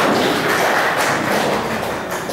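A small audience applauding, a dense patter of many hands that fades out near the end.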